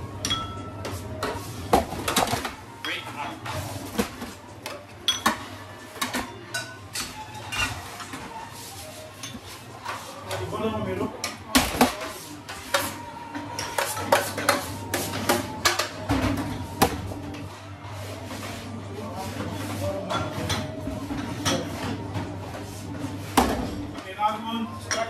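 Kitchen crockery and metal utensils clattering as food is plated: bowls, metal trays and spoons knocked and clinked together in frequent irregular knocks, over a steady low hum.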